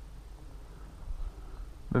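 Low, uneven rumble of wind on an outdoor camera microphone, with no other distinct sound.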